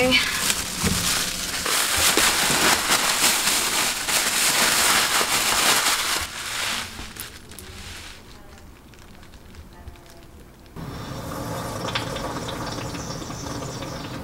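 A thin plastic bag crinkling and rustling close to the microphone as a whole raw turkey in it is handled, loud and dense for the first six seconds or so, then fading to quieter handling. About eleven seconds in a steady background hum comes in.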